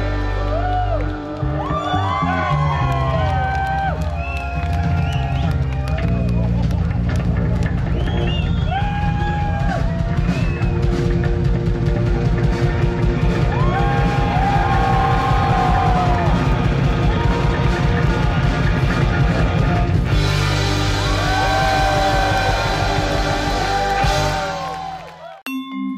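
Live rock band playing with drums, guitars and bass under a male lead singer and female backing vocals. The drums give a steady beat throughout.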